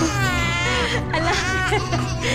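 Newborn baby crying: a high-pitched wail lasting about a second, then a second, shorter cry, over a steady background music drone.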